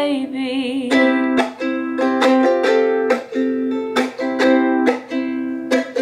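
Ukulele strummed by hand in a steady rhythm of chords, a sharp strum about every half second.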